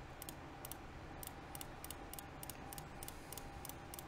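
Faint computer mouse clicks in quick succession, about three or four a second, as fixture tiles are picked one after another in lighting-control software.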